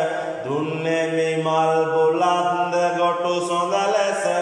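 A single voice chanting Sinhala devotional verses (kolmura/yahan kavi) to the god Gambara in long, drawn-out notes. A new phrase begins about half a second in with an upward glide in pitch, then holds steady.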